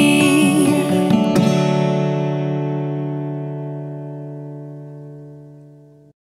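Closing bars of a children's song on acoustic guitar: a last strum about a second and a half in, then the chord rings out and slowly fades, cut off abruptly at the end.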